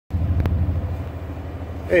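Steady, low, evenly pulsing rumble of a running motor, with a single click about half a second in.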